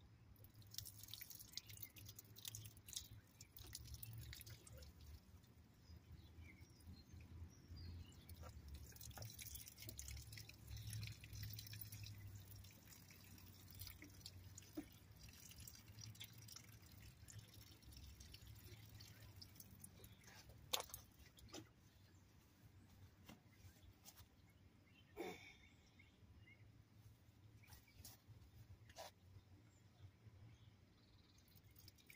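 Faint dripping and patter of water from a plastic watering can falling onto leaves and mulch, with scattered small ticks and two sharper clicks about 21 and 25 seconds in.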